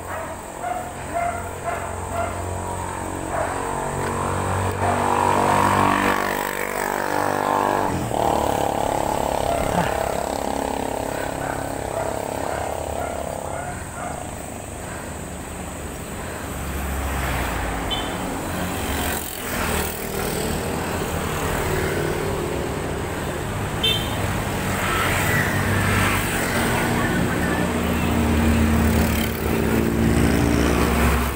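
Road traffic heard from a moving bicycle: a motor vehicle's engine drone passes close through the first half, and another engine comes up near the end, over a low wind rumble on the microphone.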